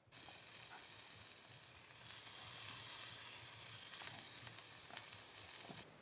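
Chopped bacon sizzling in a skillet on top of a wood stove: a steady frying sizzle that starts abruptly and cuts off just before the end.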